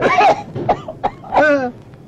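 A man's voice in several short bursts of coughing and grunting, ending in a longer groan that falls in pitch.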